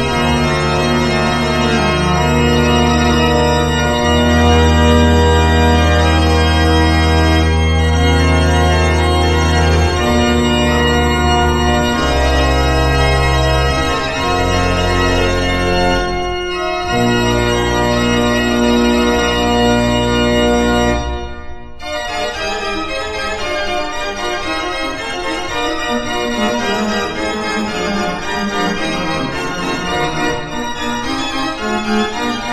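Coci-Klapmeyer baroque pipe organ playing slow sustained chords over long-held pedal bass notes. After a brief break about two-thirds of the way through, fast running figures follow in the manuals with the pedal bass silent.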